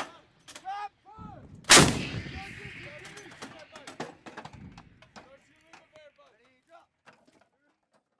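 M777A2 155 mm towed howitzer firing: one loud blast a little under two seconds in, its rumble and echo dying away over the following seconds.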